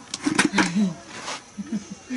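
Rice grains tossed in a bamboo winnowing tray, with a few sharp taps and a short rush of grains a little over a second in.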